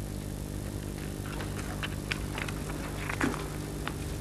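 Pages of paper booklets being turned by a seated audience, heard as scattered faint clicks and rustles over a steady electrical hum from the hall's sound system.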